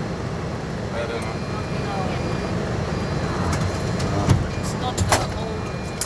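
Car engine and tyre noise heard from inside a moving car's cabin, a steady low rumble, with a few short knocks in the second half.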